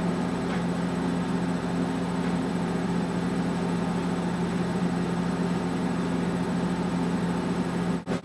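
Steady low machine hum with an even hiss, unchanging throughout.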